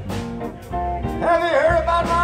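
Live blues band playing: electric guitars, bass and drum kit, with a wavering lead melody coming in about a second in.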